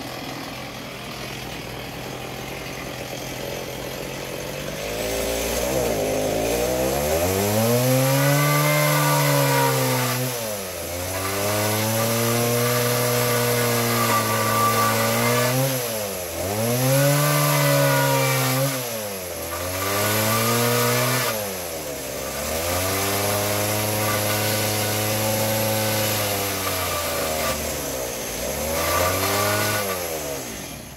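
A motor running loudly with a steady pitch. Every few seconds its speed sags sharply and then picks back up, about five times.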